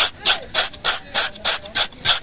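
A scraper blade pushed along the skin of a large cobia in quick, even strokes, about three a second, scaling the fish.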